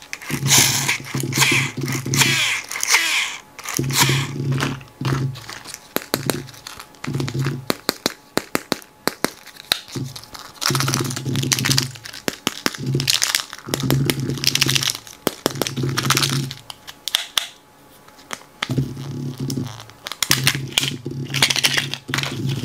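Plastic wrappers of candy surprise eggs crinkling and tearing in the hands in repeated one-to-two-second stretches, with quick runs of sharp plastic clicks and snaps as the egg capsules are handled and opened.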